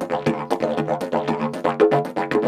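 A 180 cm fiberglass-and-kevlar didgeridoo with a wooden mouthpiece, played on its D drone in a fast rhythmic pattern of about five accents a second, with overtones shifting as the player's mouth shapes the sound.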